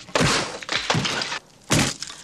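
A shouted "No!" followed by a fist smashing into a wooden post, ending in a loud sudden crack of splintering wood near the end.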